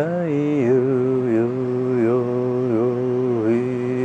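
A man chanting one long held note, his pitch dipping and settling in small steps.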